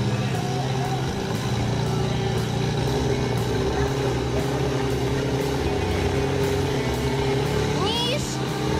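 Fire pump engine running steadily under load, driving water through the attack hoses to the jets, with voices over it.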